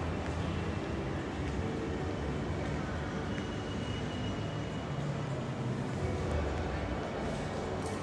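Shopping-mall concourse ambience: indistinct voices of passers-by over a steady low hum, with a thin high tone for about a second and a half a few seconds in.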